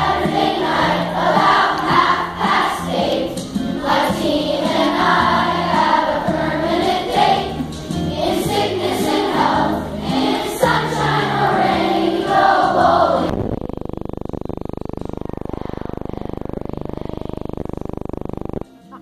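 A children's choir singing a song in unison with musical accompaniment. About thirteen seconds in, the singing and music cut off suddenly, leaving a steady, even noise.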